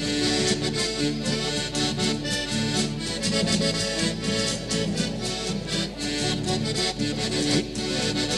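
Hohner Bravo III 72 piano accordion playing a lively Chilean folk tune, with sustained chords and melody over steady strummed acoustic guitars. It is the instrumental introduction, before the singing comes in.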